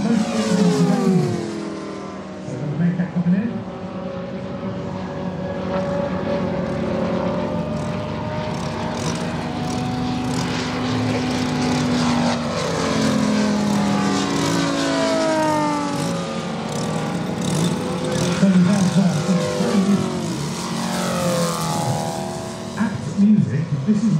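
Several giant-scale RC warbirds with Moki radial engines flying passes. The engine drone rises and falls in pitch as the aircraft come and go.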